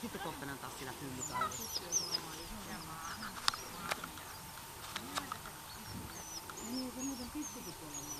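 Outdoor farmyard sounds: small birds chirping in short high calls throughout, with low animal calls that grow stronger near the end. A few sharp clicks come in the middle.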